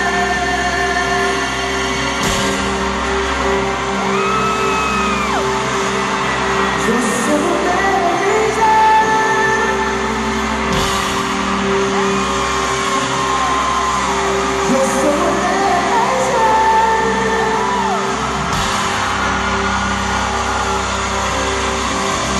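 A pop singer and live band playing a song in a large arena, with sliding sung vocal lines over steady held chords, and whoops and yells from the crowd over the music.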